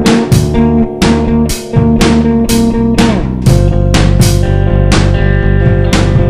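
Experimental rock instrumental on electric guitar, bass guitar and drums, with drum strikes about twice a second over sustained guitar notes. The low end grows heavier about three and a half seconds in.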